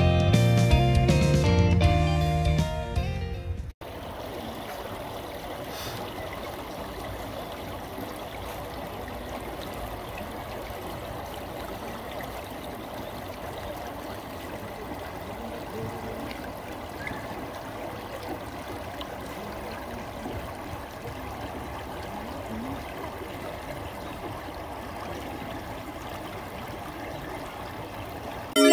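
Strummed guitar music that cuts off sharply about four seconds in, then a shallow stream running steadily over stones.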